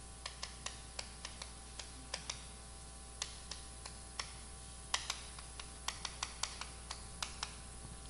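Chalk striking and writing on a blackboard: a run of short, sharp, irregular clicks, several a second, as characters are written stroke by stroke.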